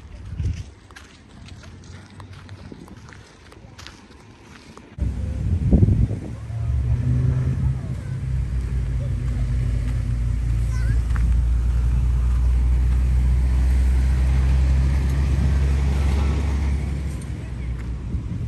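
Light crunching steps on gravel, then about five seconds in a steady low engine hum starts suddenly and carries on, slowly growing louder.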